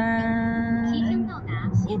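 A person's voice holding one long, steady note for just over a second, then a few short vocal sounds ending in an 'oh', over the low rumble of road noise inside a moving car.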